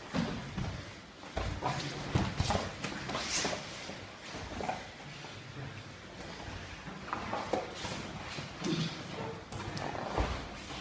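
Grappling on foam mats: irregular thumps and scuffles of bodies, hands and feet hitting and sliding on the mats as pairs roll in jiu-jitsu sparring.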